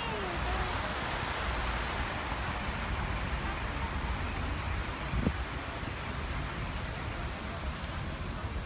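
Steady outdoor background noise with a low rumble, and people's voices, one short voice right at the start. A single short tap about five seconds in.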